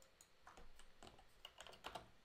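Faint typing on a computer keyboard: a scatter of quiet key clicks in two short runs, the later one near the end.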